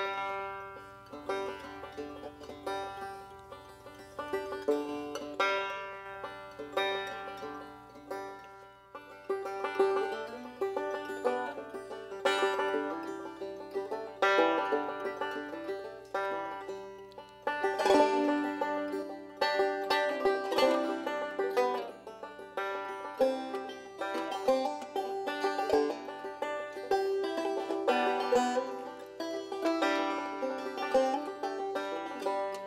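Two banjos playing an instrumental introduction together, picked notes in a steady, lively rhythm.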